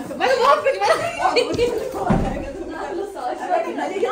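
Several women talking over one another, with some laughter. A dull low thump about two seconds in.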